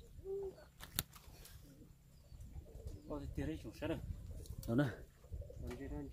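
A bird giving a short low coo just after the start, followed by a sharp single click about a second in.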